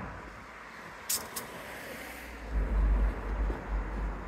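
Street ambience on a walk: a steady outdoor hiss with a low rumble that swells to its loudest near three seconds in. There are two short, sharp ticks a little after a second in.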